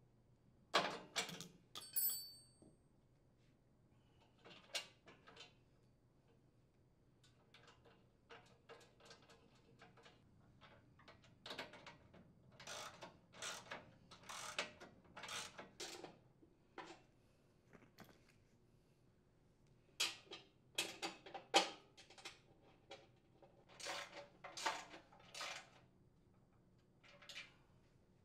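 Socket ratchet clicking in short runs, with the metal clink of wrenches on the nuts and bolts, as the chipper shredder's outer housing is bolted up. The clicks come in scattered clusters, busiest in the middle and again later.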